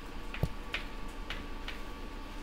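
Chalk tapping on a chalkboard during writing: a handful of sharp, irregularly spaced taps, with one duller knock about half a second in.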